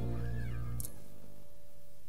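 Outro music ending: a held low bass note with a short rising-then-falling glide over it, then a sharp click just under a second in as the subscribe button is clicked, leaving only a faint fading tail.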